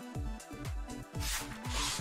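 Electronic background music with a steady beat of about two thumps a second. From a little past one second in, a loud hissing whoosh of noise swells over it and runs to the end, the kind used as a video transition sweep.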